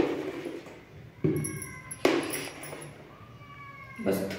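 A metal spoon knocking against a stainless steel bowl three times, about a second apart, as gram flour is spooned onto cut okra; each knock leaves the bowl ringing, the last ring fading slowly.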